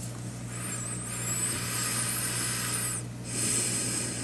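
A person breathing out slowly and at length, close to the microphone. A brief pause follows at about 3 s, then a second, shorter breath. A low steady hum runs underneath.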